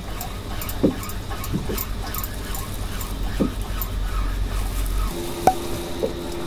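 Background noise on a small fishing boat: a low rumble with a few light knocks and faint ticks. About five seconds in the rumble stops and a steady low hum takes over.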